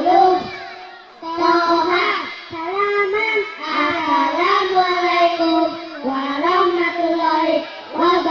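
A group of young boys singing in unison through microphones, a chanted tune reciting the Qur'an's short surahs, in phrases with brief pauses for breath between them.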